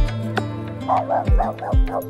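A small dog barking about five times in quick succession, starting about a second in, over background music with a regular kick-drum beat.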